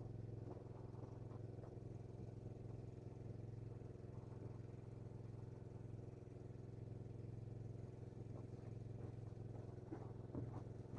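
Small 3 hp petrol engine of a fire-fighting water pump running steadily and faintly at part throttle with the choke on, warming up after a cold start.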